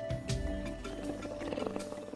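Soft orchestral music, with a lion's low rumbling vocal sound starting just after the start and fading out after about a second and a half.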